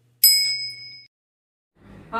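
A single ding sound effect: one bright, bell-like strike a moment in that rings briefly and fades out within about a second.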